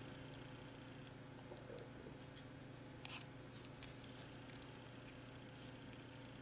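Faint scratching and a few light ticks of a pointed craft tool picking at a paper peel-off tag on a plastic test tube, a small cluster about three seconds in, over a low steady hum.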